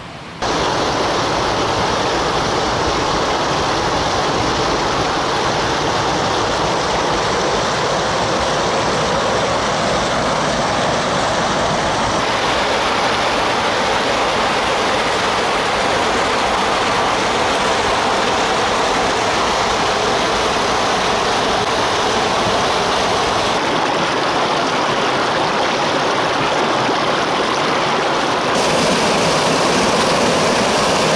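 Stream water rushing steadily, a loud even noise that changes character abruptly three times.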